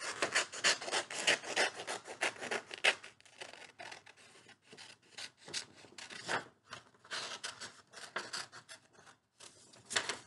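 Scissors cutting a circle out of red construction paper, a run of quick snips with the paper crackling. The cutting is densest in the first three seconds, thins out, then comes back in short bursts near the end.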